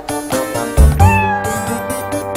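A domestic cat meows once about a second in, one drawn-out call that rises and then holds, over background music with a bass beat.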